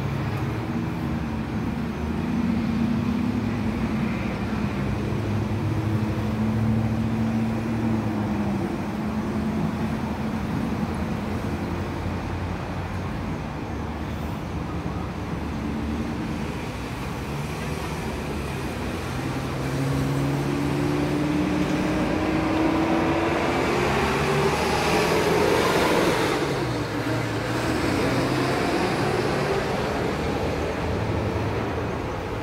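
Road traffic on a street: vehicles driving by. Near the end one vehicle's engine rises in pitch as it accelerates, growing loudest as it passes and then fading.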